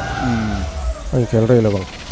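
A voice talking, in two short stretches with a brief gap between them.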